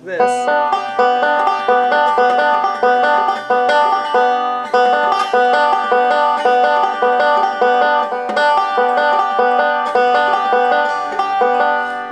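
Five-string banjo picked fingerstyle in a forward roll: a beginner repeating the right-hand roll pattern over and over as an unbroken, even run of plucked notes.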